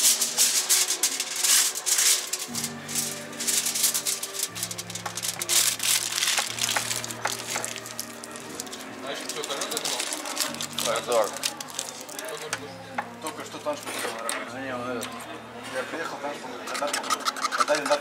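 Aluminium foil crinkling and clicking as it is stretched tight over a hookah bowl and then pricked with a metal pin, many small quick clicks, thickest near the end. Background music plays under it, its bass notes changing about every two seconds.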